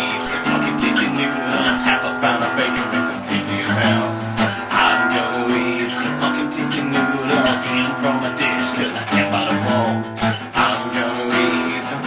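Acoustic guitar strummed, playing chords in a steady rhythm.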